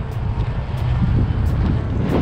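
Wind rumbling and buffeting on the microphone of a camera mounted on a moving bicycle: a loud, steady, low rumble.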